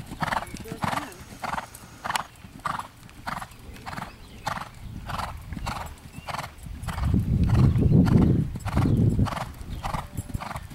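Horse cantering on a sand arena, its hoofbeats falling in a steady rhythm of about three a second. In the second half a low rumble swells for about two and a half seconds and is the loudest sound.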